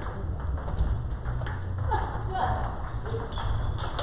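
Table tennis balls ticking off rubber bats and tabletops in quick, irregular clicks, from rallies at several tables at once.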